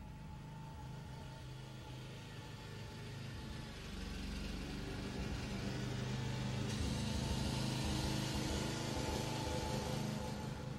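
A low, steady engine-like running sound that slowly grows louder.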